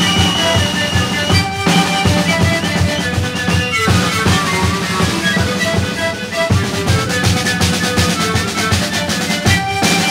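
Sikuri panpipe ensemble playing: many siku panpipes sound short held notes in a melody over a steady beat of large bass drums (bombos) and a snare drum.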